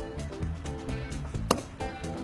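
Background music with a steady beat. About one and a half seconds in, a single sharp pop: a bathroom plunger pulling free of a dented car door panel.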